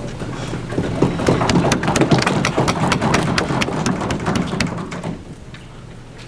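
Audience applause after a speech, a dense patter of clapping that swells about a second in and dies away about five seconds in.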